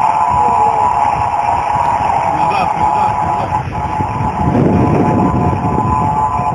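A steady tone of several close pitches, level and unwavering, held throughout over the rumble of a moving car. The rumble swells about two-thirds of the way through.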